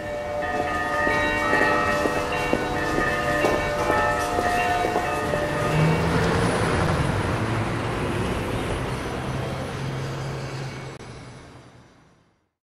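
Several bells ringing together, struck over and over so that their many tones overlap. About six seconds in they give way to the noise of a heavy vehicle on the street with a low engine hum, and the sound fades out at the end.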